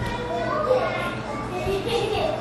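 Young children's voices, high and wordless, as they play on the floor.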